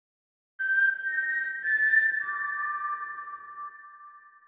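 Electronic transition sound effect for an animated title card: after a brief silence, a few steady, pure high tones come in one after another, overlap, and fade away near the end.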